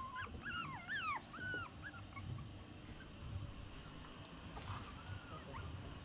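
Young puppy whimpering: a run of about five short, high whines in the first two seconds, then only faint rustling of a towel being handled.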